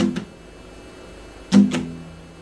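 Acoustic guitar being strummed with a quick pair of strums, the chord ringing between them. About a second and a half later comes another quick pair, the first of them the loudest.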